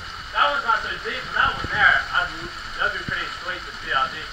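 Unclear talking voices over the steady rush of a small waterfall.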